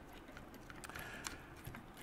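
Faint, irregular light clicks of a screwdriver and screw tapping on a nitro RC car's engine mount as the thread-locked screw is fitted and started into its hole, with a few sharper clicks in the second half.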